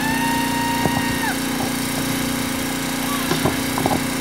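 A steady low hum like a small motor running, with a held pitched tone at the start that lasts just over a second and drops in pitch as it ends. A few faint clicks come near the end.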